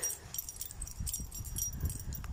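Light metallic jingling over a low, uneven rumble of footsteps and the phone being handled while walking.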